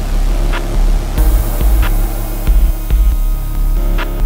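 Instrumental electronic music: a pulsing deep bass with sharp clicks over it, and a high hiss that comes in about a second in.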